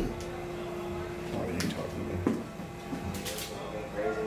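Indistinct voices in the background over a steady hum. The hum stops with a sharp click a little over two seconds in.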